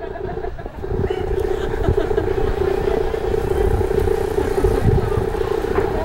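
A small passenger boat's engine drones steadily as the boat motors past, with a brief dip a little after half a second in. An irregular low rumble runs underneath.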